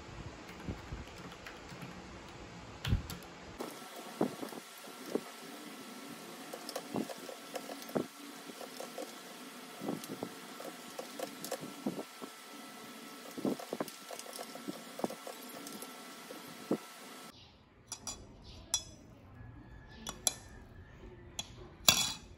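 Typing on a Vissles V84 mechanical keyboard, clacking keystrokes at first. Then scattered knocks and clicks over a faint steady hum, and near the end a metal spoon clinking against a glass mug.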